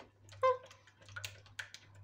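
A silicone spatula stirring in a plastic measuring jug, with a few light clicks and scrapes against the jug's sides over a low steady hum. About half a second in, a brief pitched sound stands out as the loudest moment.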